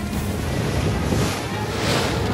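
Animated-film soundtrack: music over a steady rushing, rumbling noise of a giant snowball rolling down a snowy slope after a sled, with a whoosh swelling near the end.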